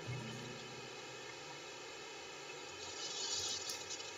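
Faint steady hum over low background noise, in a pause between a sung hymn and speech; the last low note of the singing dies away in the first moment.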